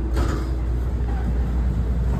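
Steady low rumble inside a moving NJ Transit commuter train car as it runs along the rails.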